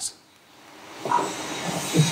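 A hiss that swells steadily over about a second and a half, with a brief faint voice-like sound about a second in.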